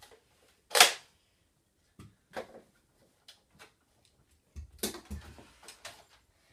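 Handling noises: one sharp knock about a second in, a few light clicks, then a cluster of knocks and rustling near the end.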